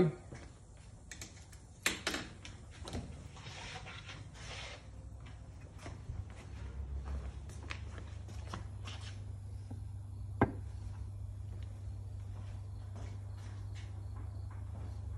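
Handling and walking noise in a workshop: scattered clicks and knocks, with a sharp click near the end. A steady low hum comes in about halfway through.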